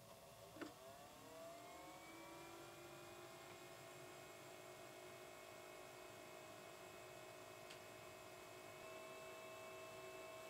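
Faint motor whine from a Dark Skys DS1 star projector, heard from close by: after a small click, several tones rise in pitch over about the first two seconds as it spins up, then hold steady. This projector is rated among the noisiest of the eight compared.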